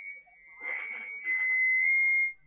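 A steady, high-pitched whistling tone holding on one pitch, with faint talk under it in the middle.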